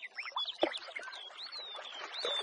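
Several birds chirping, many short whistled calls sweeping up and down in pitch and overlapping one another.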